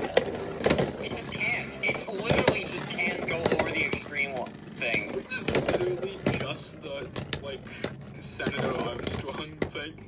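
Two Beyblade spinning tops whirring in a plastic stadium, with a stream of sharp clicks and knocks as one top keeps hitting the stadium's Xtreme Line rail and the other top, which holds its spot spinning near the centre.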